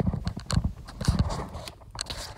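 Several irregular knocks and low thumps, a few a second, like hard objects being handled or set down.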